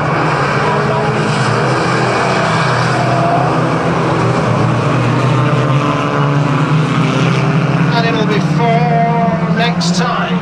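Several banger racing cars' engines running hard together as the pack races around the track: a steady, mixed engine drone. Voices come in near the end.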